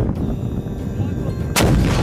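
A single loud blast about one and a half seconds in, from a tripod-mounted heavy weapon being fired, over a steady low rumble.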